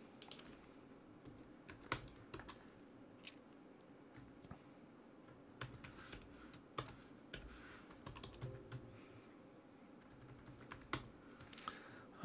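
Faint, irregular keystrokes on a computer keyboard, single taps and short runs with pauses between them.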